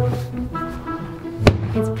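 Background music with a single sharp thud about one and a half seconds in, as the hot tub's hard foam cover is folded back.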